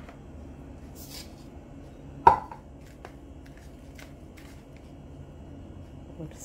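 Dark brown sugar tipped from a glass bowl into a plastic bowl of grated coconut and worked in by hand, with a brief gritty hiss about a second in. A single sharp knock a little over two seconds in stands out as the loudest sound, with a few faint ticks after.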